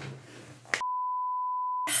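A single steady electronic beep, one pure tone lasting about a second, set in dead silence and preceded by a short click.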